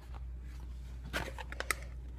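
Light handling of food packaging: a few faint clicks and rustles in the second half, over a low steady hum.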